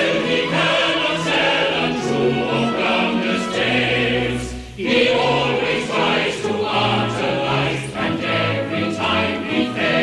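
Operetta chorus singing a refrain with orchestral accompaniment, with a short break between phrases about halfway through.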